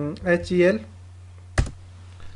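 A single sharp keystroke on a computer keyboard about one and a half seconds in, entering the HELIX command, after a short stretch of a man's voice. A steady low electrical hum runs underneath.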